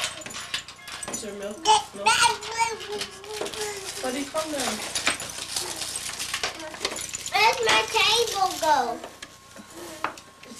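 A young child's high-pitched voice vocalizing without clear words, the pitch gliding up and down, loudest in two stretches near the start and near the end. Frequent rustling and crinkling of gift packaging underneath.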